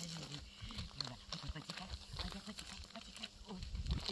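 A young puppy making short, low vocal sounds as it plays, with small crunches of gravel in between.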